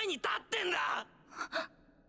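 Japanese anime dialogue: a male character speaking in a raised, strained voice that breaks off about a second in, followed by one short vocal sound.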